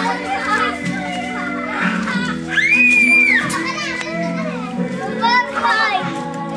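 Young children calling and shouting as they play, with one long high squeal about three seconds in, over steady music in the background.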